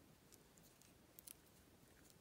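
Near silence with a few faint, light clicks of wooden lolly sticks and fingernails being handled as the sticks are set in place, two clicks close together a little past the middle.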